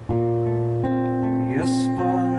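Acoustic guitar strummed live, two chords struck under a second apart and left ringing.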